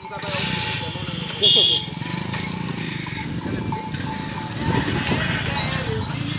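A bullock cart drawn by two oxen comes up close on a paved road: the oxen's hooves clop and the wooden cart rattles under people's voices. A short, loud, high-pitched sound cuts in about one and a half seconds in.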